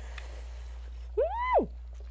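A woman's short, high-pitched squeal at the shock of ice-cold water on her bare feet. It rises and then drops sharply a little past the middle, over a steady low background hum.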